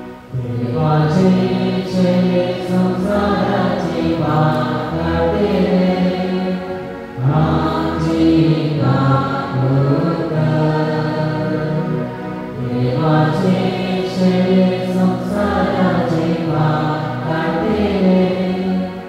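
Church choir singing a slow hymn during Mass, in three long sung phrases.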